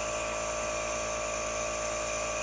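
Small nebulizer air compressor running with a steady hum, driving an albuterol mist treatment through a handheld mouthpiece.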